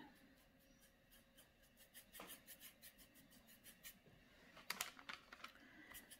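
Near silence with faint, rapid scratching of a paintbrush cross-hatching acrylic paint onto a canvas board, several quick strokes a second.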